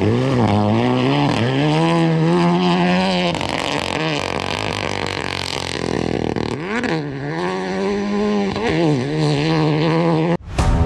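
Renault Clio Rally3 Evo rally car's turbocharged four-cylinder engine at high revs on a gravel stage, its pitch climbing and dropping with each gear change and lift. The note fades about midway, then comes back with the revs climbing again near the end.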